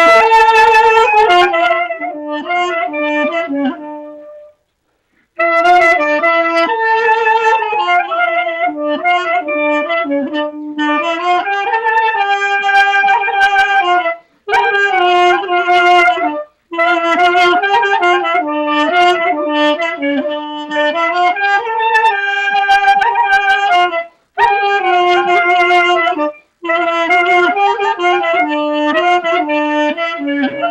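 A duduk and a clarinet playing a melody together, in phrases broken by several short pauses for breath.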